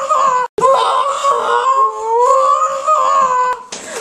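A child's voice held in one long, high-pitched wail, rising and falling gently for about three and a half seconds, broken by a short dropout about half a second in.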